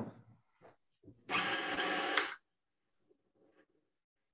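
Electric stand mixer running as it beats a dough, heard for just over a second before it drops away under a video call's noise suppression; faint scraps of sound follow.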